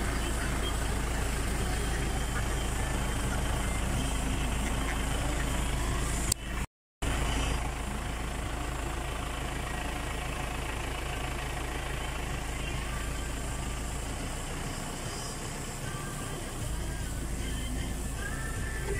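Steady low rumble of an idling vehicle engine, with indistinct voices over it. The sound cuts out completely for a moment about seven seconds in.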